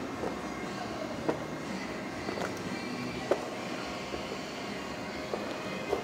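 Steady background room noise with a low rumble, and a few short clicks about a second apart.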